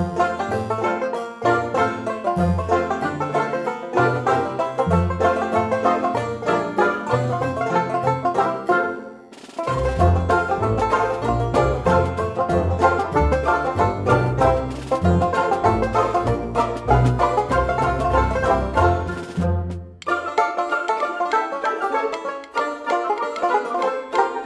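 Background instrumental music of quick plucked-string notes in a banjo, bluegrass style over a pulsing bass line. It dips briefly twice, and the bass thins out for the last few seconds.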